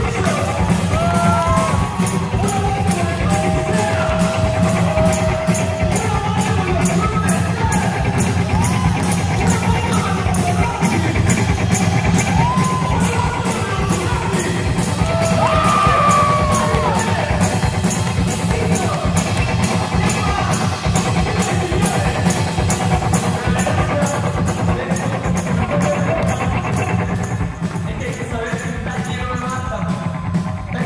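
Live rock music from a two-piece band: electric guitar and drum kit playing together, with steady cymbal strokes and sliding notes rising and falling over them. The cymbals thin out near the end.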